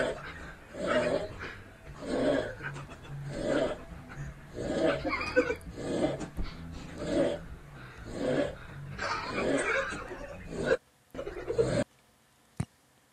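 A man snoring heavily and rhythmically, about one loud snore every second or so, with a brief break near the end. The snoring is loud enough to be taken for a sign of sleep apnea.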